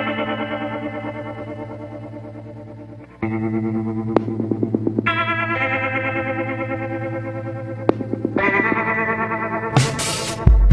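Music: sustained, distorted electric guitar chords with heavy chorus and echo effects. Each chord rings out and fades, with new chords struck about three, five and eight seconds in and quick picked notes between.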